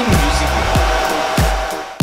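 A hair dryer blowing steadily during hair styling, with the kick drum of background music beating about every two-thirds of a second; the blowing stops suddenly at the end.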